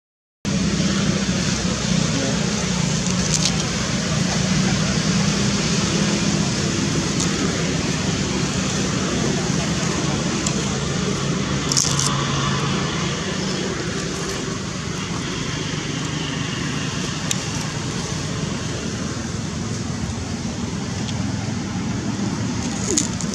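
Steady outdoor background noise of indistinct voices and road traffic, with a few sharp clicks scattered through it. It starts after a brief dead silence at the very start.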